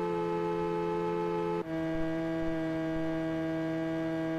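Background music of sustained keyboard chords held steadily, moving to a new chord about a second and a half in.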